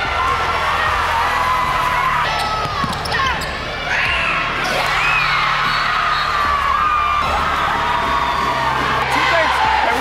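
Basketball game sounds on a hardwood court: a ball bouncing, sneakers squeaking in short gliding chirps, and players and spectators calling out.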